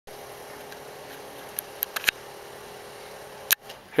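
Handheld camcorder handling noise: a faint steady hum and hiss, a cluster of sharp clicks about halfway through, and a louder click shortly before the end.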